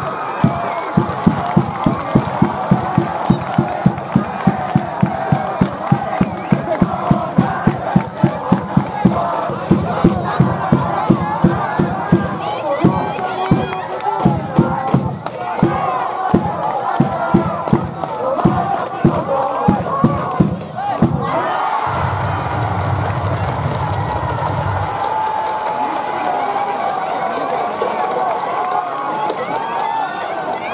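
A school cheering section in the stands at a high school baseball game, chanting and shouting to a fast steady beat of about three to four strikes a second. The beat stops about 21 seconds in and the crowd's cheering carries on.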